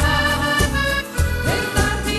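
Italian liscio dance band playing an instrumental passage, the accordion carrying the melody over a steady beat.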